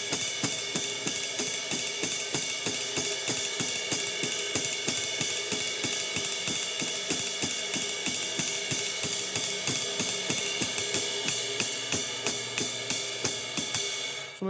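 Drum kit ride cymbal played in a fast, even uptempo swing pattern with a wooden-tipped stick, the cymbal's wash ringing continuously under the strokes. The strokes are relaxed thrown-stick hits that rebound on their own.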